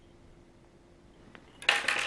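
Mostly quiet with a faint steady hum, then about a second and a half in a short metallic clatter as a small metal fly-tying tool is set down or picked up on the tying bench.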